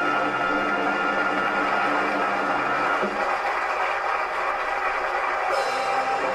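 Orchestra holding a final chord that ends about halfway through, followed by an audience applauding.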